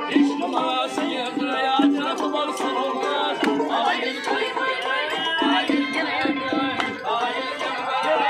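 Live folk music from an ensemble of strummed long-necked lutes and an accordion, with sharp percussive beats keeping a steady rhythm.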